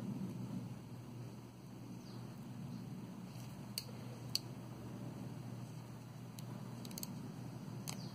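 A steady low room hum with a few faint, sharp clicks as small metal needle-nose pliers and beads are handled. Two clicks come close together near the middle, and a few softer ones come toward the end.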